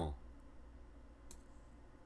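A single computer mouse click about a second in, over a faint low hum.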